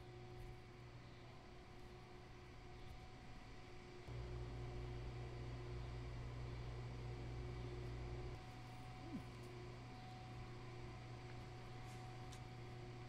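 A low, steady hum, louder for about four seconds in the middle, with a short rising chirp about nine seconds in.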